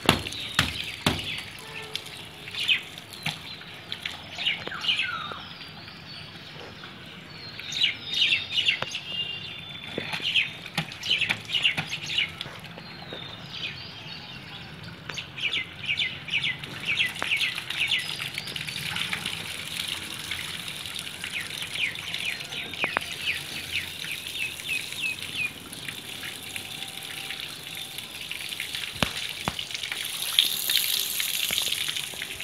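Birds chirping in short calls and quick runs, over water from a hose running and splashing onto a whole-house water filter cartridge as it is rinsed.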